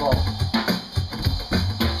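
Drum kit with electronic pads played with sticks in a steady beat of bass drum and snare-type hits, while a man's voice draws out a word at the start and starts speaking again near the end.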